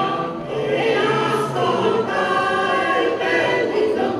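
A mixed choir of men's and women's voices singing in several parts, holding long notes.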